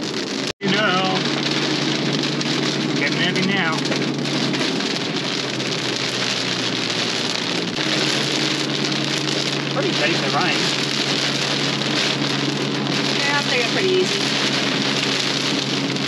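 Heavy rain pelting the roof and windscreen of a four-wheel drive, heard from inside the cab over the steady hum of its engine as it drives. The sound cuts out for an instant about half a second in.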